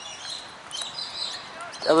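Outdoor background noise with faint, short bird chirps, then a man's voice starting near the end.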